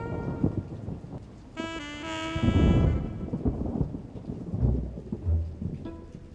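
Film score music: a brass phrase about two seconds in over a low rumbling bed, with deep booms a little before the end.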